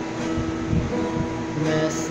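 Acoustic guitar strummed by a beginner, the chord ringing on, with a new chord struck near the end.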